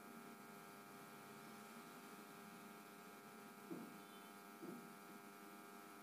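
Near silence: a faint steady electrical hum, with two brief faint sounds about four and five seconds in.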